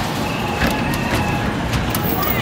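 Arcade basketball shooting game in play: basketballs knocking against the backboard and rim and rolling back down the ramp, three sharp knocks about half a second apart, over a steady arcade din with a high electronic tone from the games.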